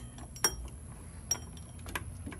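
A wrench clinking against metal as the power steering pump's mounting bolt is given a final snug tightening: three sharp metallic clinks, the loudest about half a second in.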